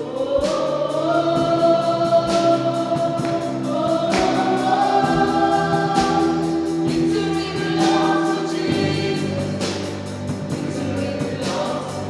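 Live gospel worship music: women's voices singing long held notes over a band of drums, electric bass and keyboards, with a cymbal crash about every two seconds.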